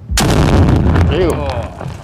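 An explosive charge detonating close by: a sudden, loud blast just after the start that rumbles and fades away over about a second and a half.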